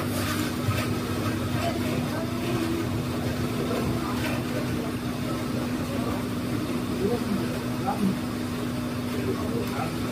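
Indistinct background chatter of voices over a steady low hum from an unseen machine.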